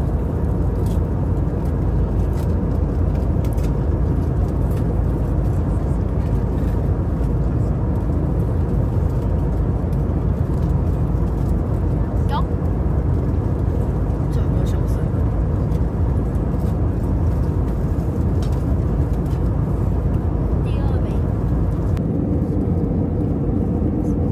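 Steady low cabin noise of a jet airliner in flight, even throughout, with faint voices in the cabin and a few small clicks.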